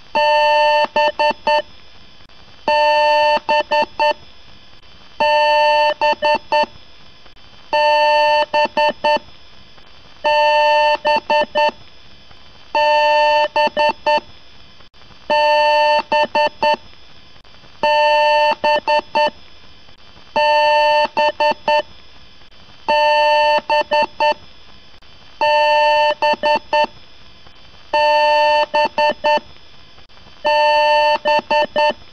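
Loud electronic alarm-like tone repeating about every two and a half seconds: each time a steady tone of about a second breaks into a quick stutter of four or five short pulses, then a short gap.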